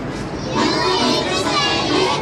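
A group of young children's voices, many at once and overlapping.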